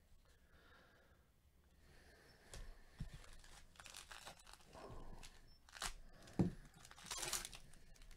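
A foil trading-card pack torn open and its plastic wrapper crinkled in gloved hands: a run of crackling rips and crinkles starting about two and a half seconds in, with one sharp thump, the loudest sound, shortly before a longer crinkle near the end.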